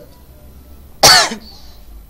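A person coughing once, short and loud, about a second in.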